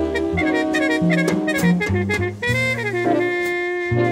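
Recorded 1965 jazz sextet playing a slow ballad: trumpet, alto and tenor saxophones over piano, upright bass and drums. A horn carries the melody, slides down around the middle and then holds a long note.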